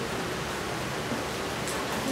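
Steady hiss of classroom room tone. Near the end come a few faint scratches of chalk on the blackboard as a diagram is drawn.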